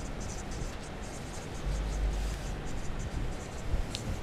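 Marker pen writing on a whiteboard: a run of short scratchy strokes as letters are drawn, with a low rumble for about a second in the middle.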